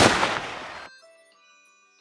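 A single gunshot from a long gun, its sharp report right at the start dying away over about the first second. Then near silence with a few faint steady high tones.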